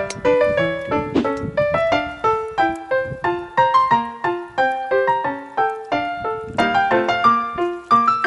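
Background piano music: a steady run of quick single notes, each struck and fading.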